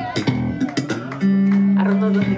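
Electric bass guitar played live in a funk band, with sharp percussive attacks and a low note held from a bit past a second in.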